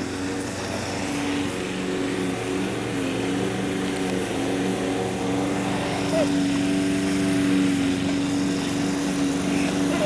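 Petrol push lawn mower engine running steadily, a constant low hum.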